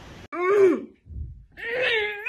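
A woman's voice groaning twice without words: a drawn-out groan that rises and then falls in pitch, then a higher, held one near the end.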